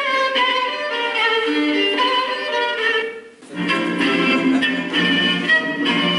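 Orchestral classical music led by violins and other bowed strings. About three seconds in it fades briefly, then comes back with fuller, lower string notes.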